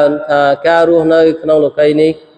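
A man chanting Qur'anic verses in Arabic, his voice holding level notes syllable by syllable with short breaks between.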